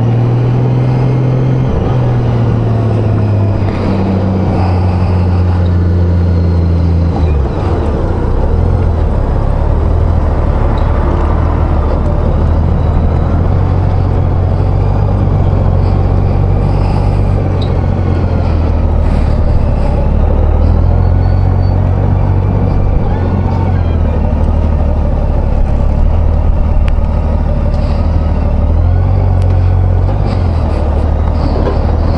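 Honda Gold Wing motorcycle engine running at low speed. Its note falls over the first seven seconds as the bike slows, then stays low and fairly steady, rising and falling a little with the throttle.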